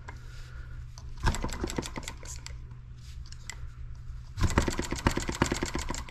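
M17B miniature single-cylinder gas engine being flicked over by its flywheel to start, its exhaust packed with fiberglass and steel wool. It fires in two short runs of rapid popping, about a second in and again from about four and a half seconds in, but does not quite catch and keep running.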